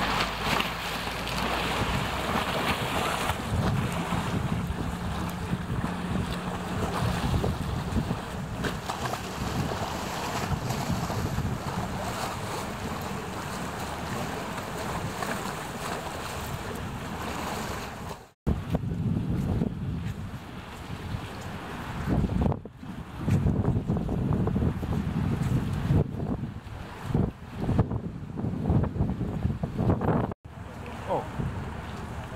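Storm-surge waves on the flooded Elbe splashing against a quay edge, with strong wind buffeting the microphone. About two-thirds of the way through the sound cuts out for a moment, then the wind comes in irregular gusts.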